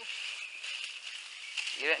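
A steady high-pitched drone of insects, with dry leaves and brush rustling as a person slides down a wooded bank.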